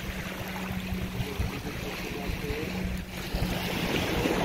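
Sea water lapping and washing around in the shallows, with wind noise on the microphone and a steady low hum underneath.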